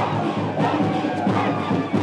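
A large crowd of people cheering and shouting together, many voices overlapping, with music playing underneath.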